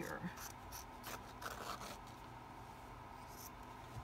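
Fabric scissors cutting through an old pillowcase: several short snips with cloth rustling in the first two seconds, and one more near the end.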